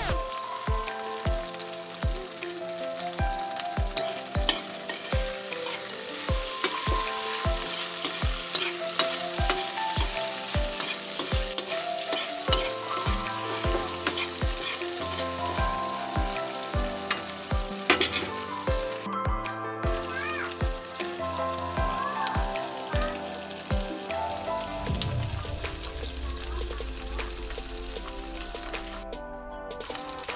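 Tofu cubes, chilies and onion sizzling in a wok as they are stirred, with short scrapes and crackles. Background music with a steady bass beat plays underneath, the beat stopping about 24 seconds in.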